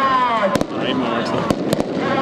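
Several sharp cracks, two close together about half a second in and three more about a second later, over a drawn-out, falling call from a man's voice.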